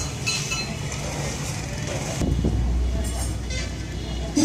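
A low motor-vehicle rumble that grows noticeably louder about two seconds in.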